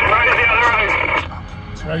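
A voice crackles through a two-way radio speaker, thin and garbled, for about the first second, then stops. Steady car-cabin road rumble runs underneath.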